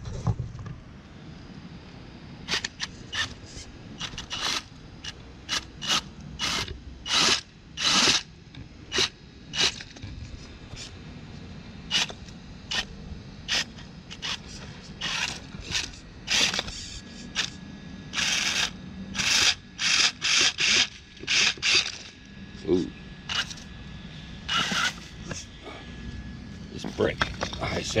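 Radio-controlled Vaterra Twin Hammers rock racer crawling over bricks and a log: a long run of irregular sharp clacks, knocks and scrapes as its tires and chassis work against the brick and bark, over a faint steady whine from its brushless motor and gears.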